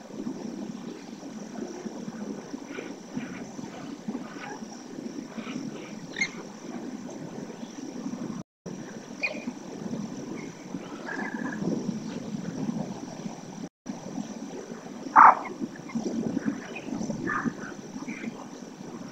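Wetland ambience: a steady low rumble with scattered short bird calls, the loudest about fifteen seconds in. The sound cuts out briefly twice.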